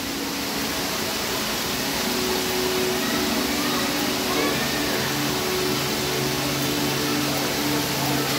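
Steady rushing background noise with a low droning hum of several steady tones; a deeper hum joins about halfway through.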